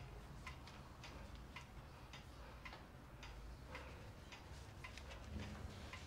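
Faint ticking of a clock, about two ticks a second, over a low room hum.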